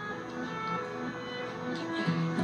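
Soft background music with sustained, held notes.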